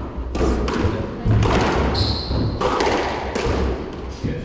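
Squash rally: the ball struck by racquets and smacking off the walls in a run of about six sharp hits, roughly one every half second. A brief shoe squeak on the wooden court floor comes about two seconds in.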